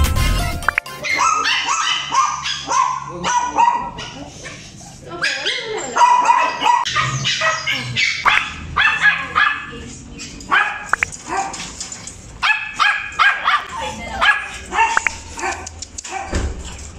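Small dogs and puppies barking and yipping again and again in short high bursts, with background music underneath.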